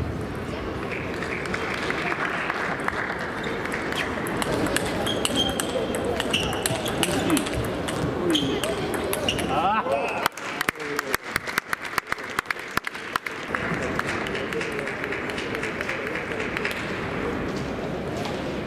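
Plastic table tennis ball clicking off bats and table over steady chatter in a large hall. About ten seconds in comes a run of light, evenly spaced ball clicks, about three a second, lasting about three seconds.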